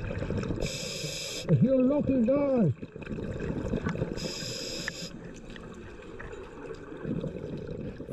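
A scuba diver breathing through the regulator underwater. There are two short hissing inhalations about three seconds apart, each followed by a low rumble of exhaled bubbles, and the first exhalation carries a wavering, voice-like tone.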